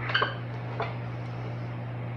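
Two light clinks of a rubber spatula and mixer parts against the stainless-steel bowl of a stand mixer as the spatula is pulled out and the bowl is lowered, over a steady low hum.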